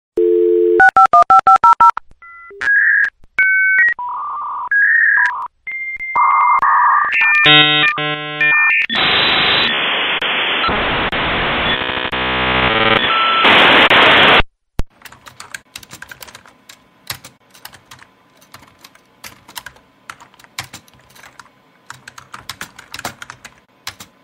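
A telephone dial tone, then a number dialled in quick touch-tone beeps, then the shifting tones and hissing screech of a dial-up modem connecting, which cuts off suddenly about fourteen and a half seconds in. After that come quieter, irregular clicks of typing on a computer keyboard.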